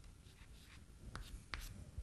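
Chalk writing on a chalkboard: faint scratching with a few sharper taps of the chalk against the board in the second half.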